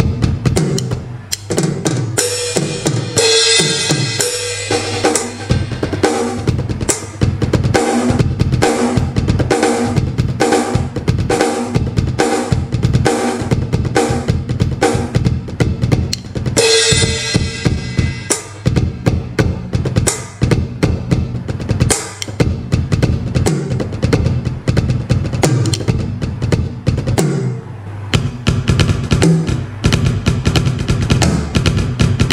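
Rockstar Pad 20 Pro electronic percussion pad played with sticks, sounding a fast, continuous drum-kit pattern of kick, snare and rim hits. Bright hissing splashes ring out about two seconds in and again around seventeen seconds.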